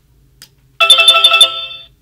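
SadoTech RingPoint driveway alert receiver sounding its electronic chime, a quick run of bright ringing notes that starts about a second in and fades away. The chime signals that a paired motion sensor has been triggered.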